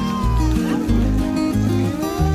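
Background music with a steady beat about twice a second and long sliding high notes over it.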